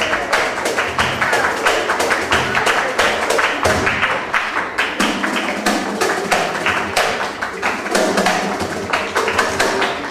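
Live flamenco music played by a band, with steady rhythmic hand clapping running through it.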